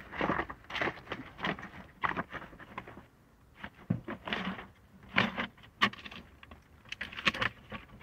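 Irregular rustling, tapping and light clattering of items being handled, broken by a brief near-silent gap about three seconds in.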